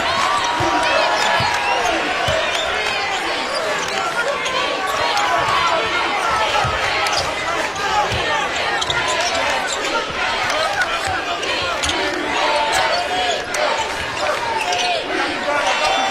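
Basketball dribbled on a hardwood court over steady arena crowd noise, with many voices blending together.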